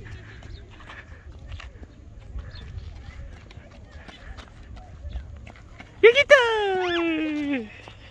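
A toddler's voice: one loud, long call about six seconds in, lasting about a second and a half, starting high and sliding down in pitch with a quick upward swoop in the middle.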